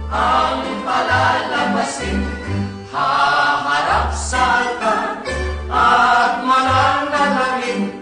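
A small mixed group of men and women singing a song together into a microphone, holding long notes in phrases, over a low bass line that moves in a steady beat.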